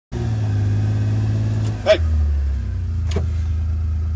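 Engine of an open-sided, roll-caged vehicle running steadily at idle; its low note steps down in pitch about two seconds in. Two short vocal sounds break in briefly.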